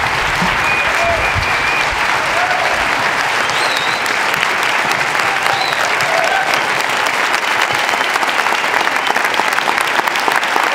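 A large audience clapping steadily and loudly, many hands together.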